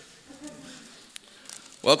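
A pause in a man's speech: faint room sound with a low buzz, a single light click about a second in, and the voice starting again near the end.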